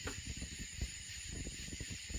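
Steady high hiss of night insects, with soft low thumps of footsteps and camera handling.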